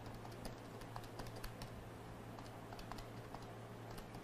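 Faint, irregular clicking of keys being typed as a sum is keyed in, over a steady low hum.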